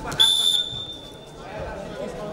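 Referee's whistle: one sharp, shrill blast of about a second, stopping the wrestling bout.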